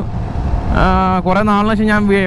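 Low riding rumble from the motorcycle and wind for under a second. Then a background song's voice comes back in, singing long, held notes over the ride noise.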